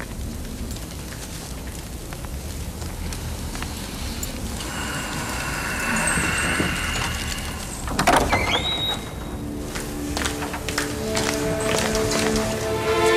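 Background music from a drama's score. It starts as a hushed, noisy texture and a band of tones swells in the middle. A sudden loud accent comes about eight seconds in, and held notes take over near the end.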